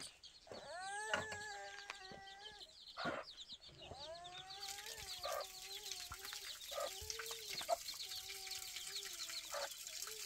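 A hen making a run of long, drawn-out calls one after another. From about halfway, water splashes from a tank tap onto the ground.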